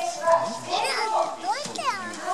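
Children's voices calling out and chattering, with high, quickly rising and falling shouts in the second half.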